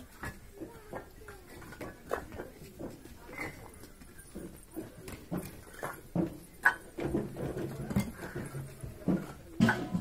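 Fired clay bricks clinking and knocking against each other as they are picked up and stacked, in irregular sharp hits, the loudest near the end. A low pitched sound is held for about a second and a half a little past the middle.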